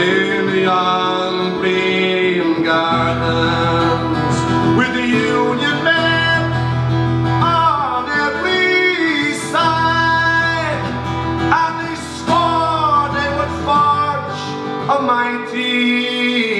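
A man singing an Irish folk ballad live over his own acoustic guitar, holding long notes that bend in pitch.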